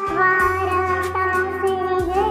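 Naat, an Urdu devotional song, with the singer holding a long note over musical backing. A low steady bass tone comes in about half a second in, with light ticking percussion above it.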